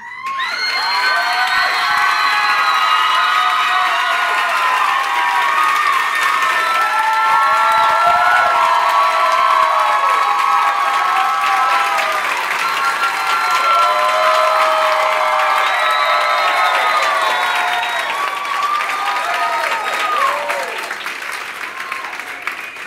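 Audience cheering and applauding, with many voices holding high shouts and whoops over the clapping. It breaks out suddenly, stays loud and eases slightly near the end.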